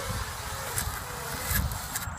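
Small quadcopter drone's propeller motors buzzing faintly as it settles on the grass after landing, with wind rumble on the microphone.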